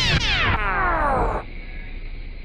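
Descending synthesized sound effect: several bright tones slide downward together, then cut off abruptly about one and a half seconds in.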